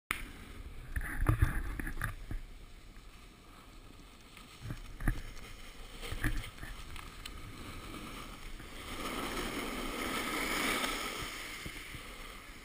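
Snowboard sliding over packed snow, a rushing scrape that swells a few seconds before the end, with a few knocks and bumps on the handheld action camera in the first half.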